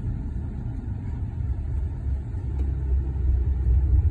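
A car's engine and road noise heard from inside the cabin: a steady low rumble that grows a little louder near the end.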